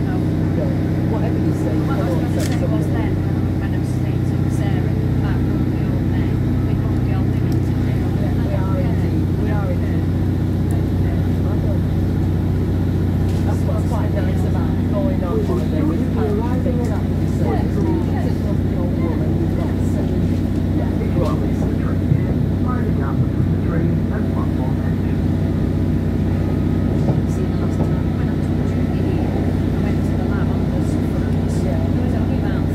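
Class 150 Sprinter diesel multiple unit heard from inside the passenger saloon: its underfloor Cummins diesel engine running steadily under power, with the rumble of the wheels on the track as the train gets under way.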